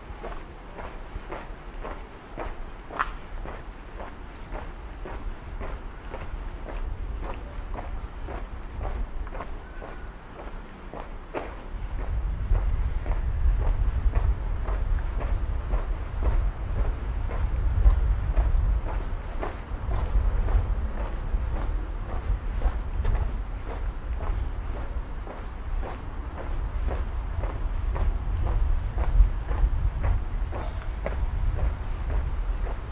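Steady footsteps on a paved street. From about twelve seconds in, a low rumble of wind on the microphone joins them and makes the rest louder.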